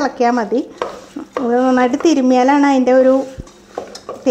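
Hand mixing beef with onions and masala in an aluminium pressure cooker, with soft stirring noise and a few sharp clicks against the pot. A woman's voice speaks over it, the loudest sound, in drawn-out phrases at the start and from about a second and a half in.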